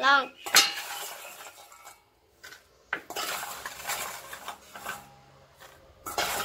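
A metal spoon scraping and clinking against a stainless steel bowl while scooping fried cashews, the nuts clattering as they are moved. It comes in two spells, with a short lull about two seconds in.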